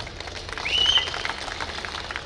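Crowd clapping in a pause of the speech, with a short whistle about half a second in that rises and then holds briefly.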